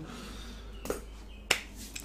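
Room tone with a steady low hum, broken by two short clicks: a faint one just before a second in and a sharper one about one and a half seconds in.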